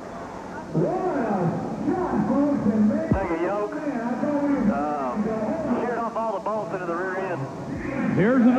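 Mostly speech: a man talking almost without pause.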